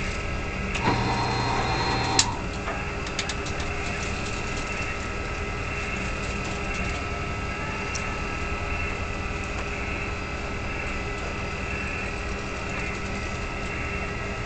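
Steady drone of a fishing vessel's engine heard inside the wheelhouse, with several constant hum tones. A brief humming tone sounds about a second in, and a single sharp click comes just after it.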